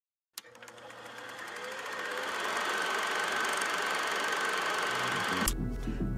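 Film projector running, a rapid steady mechanical clatter that fades in over the first two seconds and holds. Near the end it cuts to a low bass tone as music starts.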